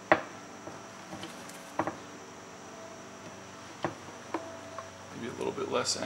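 A few isolated sharp clicks of a hand tool on metal, spaced a second or two apart, as a socket is worked onto a throttle actuator bolt inside the engine bay. Low murmured voices come in near the end.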